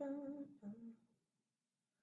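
A woman humming briefly: two short held notes in the first second, the second one lower.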